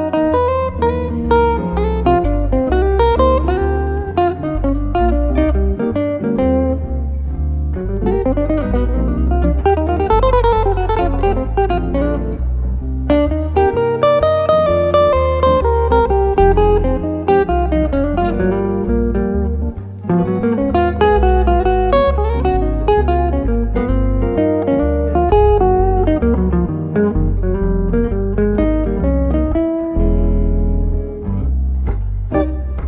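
Jazz guitar duo playing live: an archtop hollow-body electric guitar and a second guitar weave single-note melodic lines over chords and low bass notes without a break.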